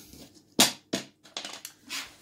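Plastic draughts pieces clicking against a wooden board as they are picked up and set down: two sharp clicks about half a second and a second in, then a few lighter taps.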